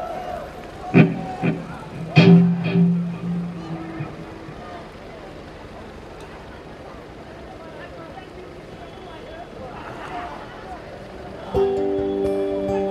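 A solo instrument sounds two separate notes or chords a little over a second apart, each ringing and fading away. A quieter lull with faint voices follows, and near the end the instrumental solo begins with loud, sustained notes.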